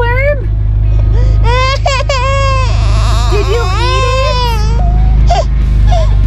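Toddler crying in several drawn-out wails that rise and fall, over a steady low rumble.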